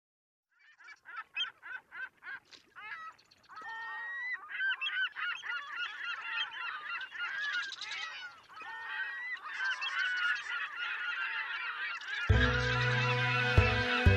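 A flock of gulls calling: a run of single calls first, then many birds calling over one another. Music with a deep bass line comes in near the end.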